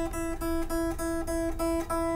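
Electric guitar's high E string plucked again and again, about three times a second, ringing at one steady pitch as it is brought back up to tune after its bridge saddle was lowered.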